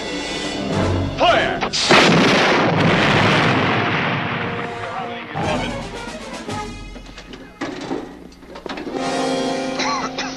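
Heavy gun blast about two seconds in, an anti-tank gun shot and shell explosion knocking out a half-track, with a long rolling decay, followed by a cluster of sharp cracks around the middle, all under a dramatic film score.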